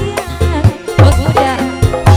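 Live dangdut band music: deep kendang hand-drum strokes under a melody whose pitch slides up and down.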